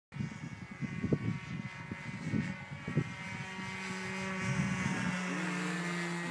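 Radio-controlled model airplane's motor whining in a steady, many-toned drone as it makes a low pass overhead. Irregular low thumps sound through the first three seconds.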